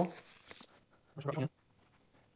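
A man's voice trails off at the start, then a short, low hum or single voiced word about a second in; after it there are only faint small clicks.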